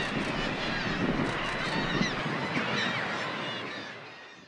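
A seabird colony, with many birds calling over one another in a dense, unbroken chorus of short harsh calls. It fades out near the end.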